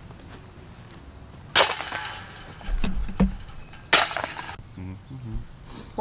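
Discraft disc golf basket chains rattling as putted discs hit them, twice: a sharp metallic jangle about one and a half seconds in that rings and dies away, and a second one about four seconds in.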